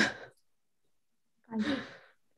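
Brief human vocal sounds with silence between: a short murmur at the start, then a breathy, sigh-like exhale about a second and a half in.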